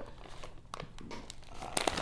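A plastic popcorn bag crinkling as it is handled and turned, in soft scattered crackles that grow louder near the end.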